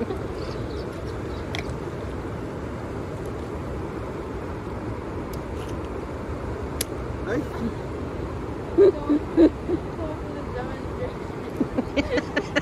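Steady rush of a fast river running over a shallow rapid. There are a few sharp clicks of a wooden stick among the stones, and short bursts of voices or laughter just before the ten-second mark.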